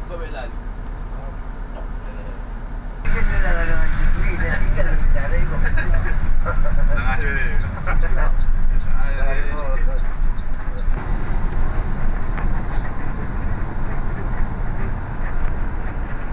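Steady engine and road rumble heard inside a moving intercity bus, with voices talking in the cab from about three seconds in until about ten seconds in.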